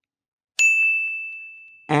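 A single bright ding, a notification-bell sound effect, that sounds about half a second in and rings on one steady pitch as it fades away over about a second and a half.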